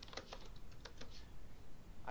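Faint typing on a computer keyboard: a quick run of keystrokes as a short reply is typed.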